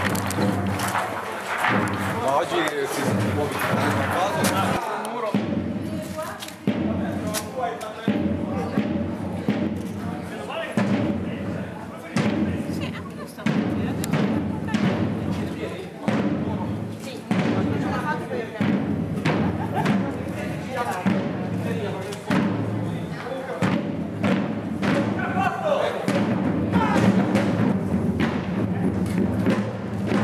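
Marching drum beating a slow, steady cadence, about one stroke every second or so, over a steady low drone, with voices in the background.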